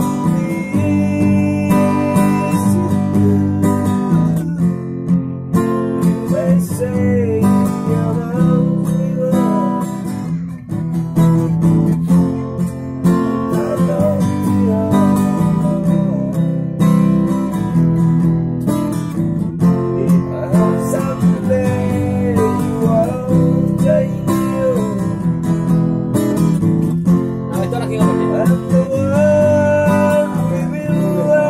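Acoustic guitar strummed in a steady rhythm, with a wavering melody line above the chords.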